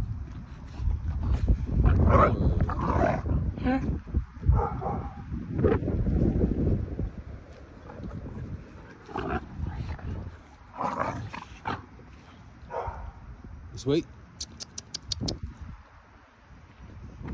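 Several dogs playing and roughhousing together, giving short calls in bursts over heavy rumbling scuffle noise that is loudest in the first half. A quick run of about six sharp ticks comes near the end.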